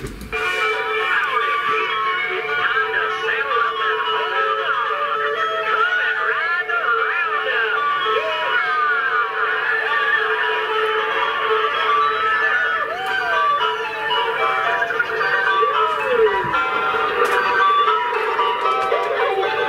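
Lemax Round-Up animated model fairground ride playing its tinny electronic fairground tune through its small built-in speaker while it spins, starting abruptly. The tune plays without stalling, now that the ride has been repaired.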